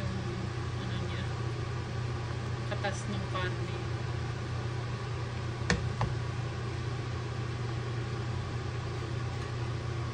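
A steady low mechanical hum, with wooden spatulas moving glass noodles in a pan and a sharp knock a little before six seconds in, followed by a lighter one.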